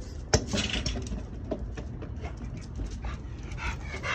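Dog panting, with one sharp knock about a third of a second in.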